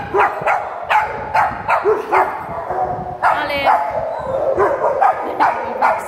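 Puppies barking and yipping in play: short sharp barks about every half second, with one longer, higher, wavering yelp about three seconds in.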